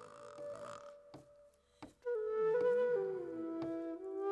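A Chinese bamboo flute plays a slow melody of long held notes. It pauses for a moment in the middle, then slides down to a lower note near the end. A brief noise comes at the start.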